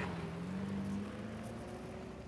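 Semi truck's engine pulling away as a steady low hum, slowly fading.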